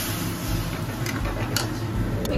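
Flat metal spatula stirring milk and mushrooms in an aluminium kadai, with a few light clicks of the spatula against the pan about a second in and again half a second later, over a steady low hum.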